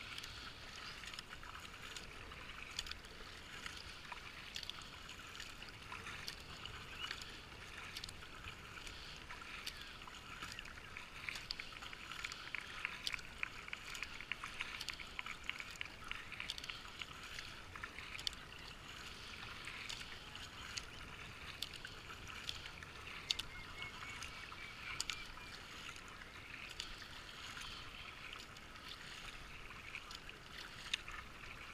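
Kayak paddle strokes splashing and river water rippling and lapping around a racing kayak, a steady wash with many small splashes and drips throughout.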